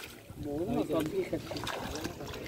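Indistinct voices talking quietly, over faint splashing of fish thrashing in a keep net at the water's edge.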